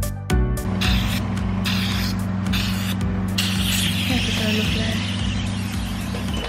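Hydrafacial machine's vacuum pump running with a steady hum. The hiss of the extraction pen's suction comes and goes several times as the pen is drawn over the skin, sucking oil and dirt out of the pores.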